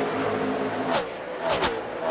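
NASCAR Cup Series V8 stock cars at racing speed: the field's engines run steadily, then cars sweep past close about a second in and again near the end, their pitch dropping as they go by.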